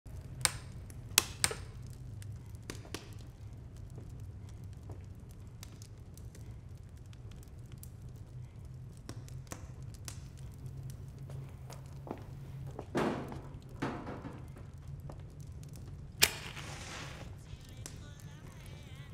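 A wooden match struck once near the end, flaring with about a second of hiss, over a low steady drone. There are a few sharp clicks in the first second and a half.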